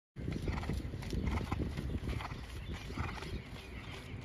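Racehorse trotting on a wet, muddy dirt track: a steady run of hoofbeats, about four a second.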